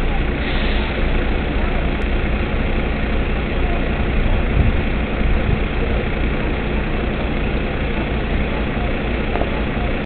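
Fire engine's diesel engine idling while stopped at traffic lights, a steady low drone, amid busy street traffic noise.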